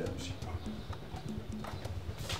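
Footsteps of a person walking on a hard floor, a step about every half second.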